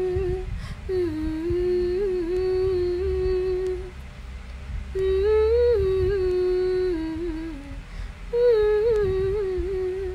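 A woman humming a tune with her lips closed, in three long phrases with short breaks between them.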